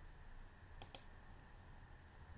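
A computer mouse clicking twice in quick succession, faint, about a second in, as a cell is selected in a spreadsheet.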